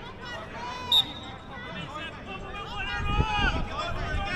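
Shouts and calls of footballers across an outdoor pitch during play, with one brief sharp sound about a second in.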